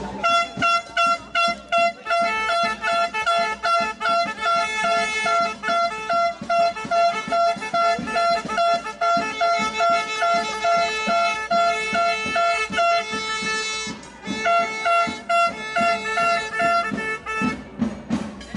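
Plastic supporter horns blown in a run of short, evenly repeated toots, about two or three a second. Two pitches sound together, a higher horn and a lower one that joins about two seconds in, with a brief break just before the two-thirds mark.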